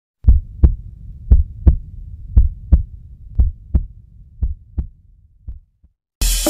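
Heartbeat sound effect: deep double thumps, lub-dub, about once a second, getting fainter over the last couple of seconds and dying away just before the end.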